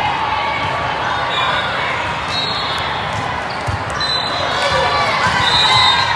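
Ambience of a large hall full of volleyball courts: many voices talking and calling, repeated dull thuds of balls being hit and bouncing, and three brief high-pitched tones.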